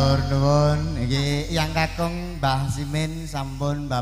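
A man's voice declaiming in a chanted, sing-song Javanese style over a microphone and PA, with a steady low drone from the band held underneath.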